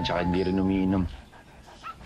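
Golden retriever giving one drawn-out whine of steady pitch, about a second long, while it refuses its food.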